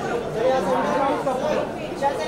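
Indistinct chatter of several people talking over one another, with no clear words.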